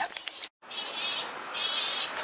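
Crazy bird noises from a pigeon-deterrent loudspeaker: high, rapidly warbling recorded bird calls in two bursts, the first about a second in, played to keep pigeons away.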